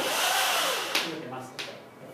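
A rough scraping rub against a chalkboard, loudest in the first second and dying away shortly before the end.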